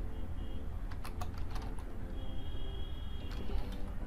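Keystrokes on a computer keyboard, typing at an irregular pace over a steady low hum.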